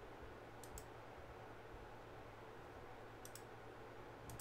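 Near silence: faint room tone with a low hum, broken by a few faint sharp clicks, a pair about a second in and a few more near the end.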